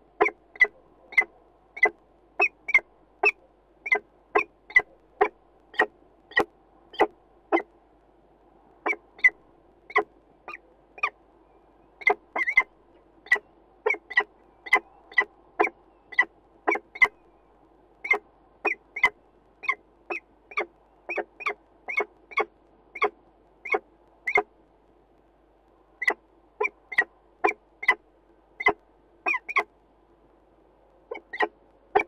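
A bird giving short, sharp calls over and over, about one or two a second with a few brief pauses, over a faint steady hum.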